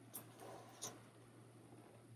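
Near silence with faint paper handling as a sticker is pressed onto a planner page and the page is shifted: two soft ticks, one just after the start and one a little under a second in, with a faint rustle between them over a faint steady hum.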